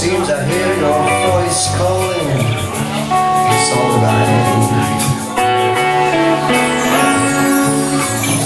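Live band playing a passage without lyrics: drums keeping a steady cymbal beat under electric guitar and keyboard chords, with a held melody line over the top.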